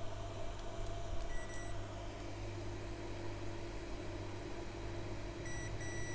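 Digital multimeter's continuity buzzer: one short high beep about a second and a half in, then a continuous beep starting near the end as the probes touch the board, the meter signalling a short, which the technician calls 'chập thẳng' (shorted straight). A steady low hum runs underneath.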